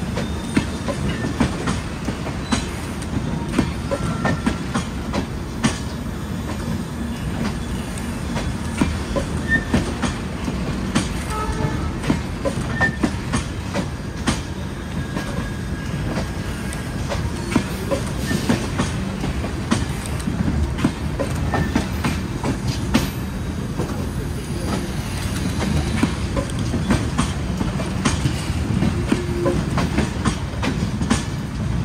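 Passenger coaches of a rake being shunted, rolling past close by. There is a steady wheel rumble with many irregular clacks over the rail joints, and now and then a faint brief squeal from the wheels.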